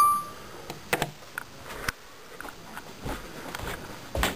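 A short electronic chime as the iPod Touch's Voice Memos recording starts, fading within a moment. About a second in comes a sharp knock as the iPod is set face down on the table, followed by scattered light knocks and handling noise.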